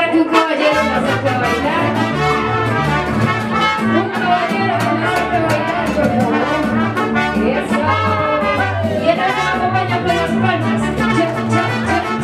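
Mariachi band playing, trumpets leading over a bass line that moves from note to note in a steady rhythm.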